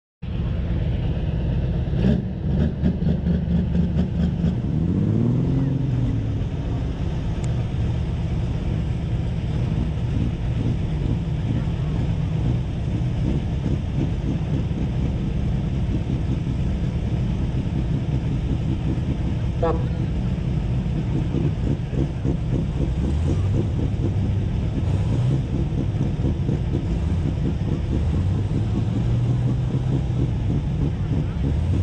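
Pulling tractors' diesel engines running at the start line, revving up around five seconds in and again several times in the last few seconds, with a quick rattle of clicks about two seconds in.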